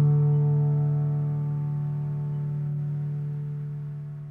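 The final chord of a slow, soft piano piece, struck just before and held, ringing and slowly fading out.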